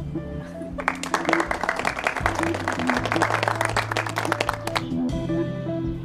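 A few people clapping, starting about a second in and stopping near five seconds, over background music with long held notes.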